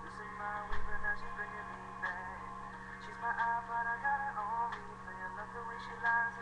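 A voice singing a melody in phrases, heard through a webcam microphone over a steady low hum, with a low bump about a second in.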